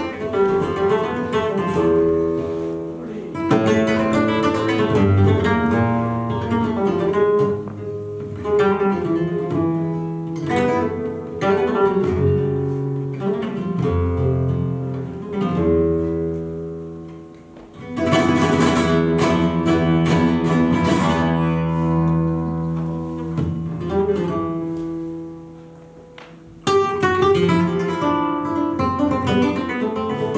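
Solo flamenco guitar playing a soleá: plucked melodic runs and bass notes broken by dense strummed flurries, the fullest strumming about eighteen seconds in. The sound fades down late on, then a sudden loud strum picks it up again.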